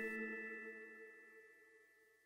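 The last chord of the background music ringing on after the final beat, a few held tones fading out by about a second in.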